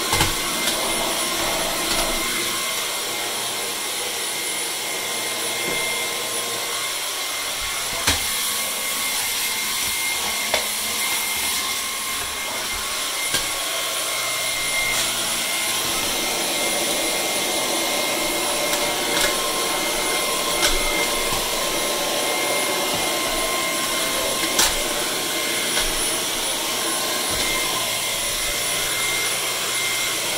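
Handheld vacuum cleaner running steadily with a high-pitched motor whine as its nozzle is worked over a sink, with a few brief sharp taps along the way.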